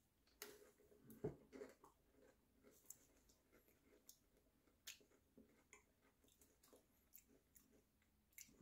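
Faint biting and chewing of a crunchy-edged cookie studded with crushed mini eggs: a few soft crunches in the first two seconds, then sparse quiet mouth clicks.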